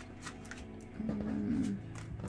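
Tarot cards being picked up off a wooden tabletop and gathered into the hand, with soft clicks and slides of card stock. About a second in, a brief low wavering hum is heard over it.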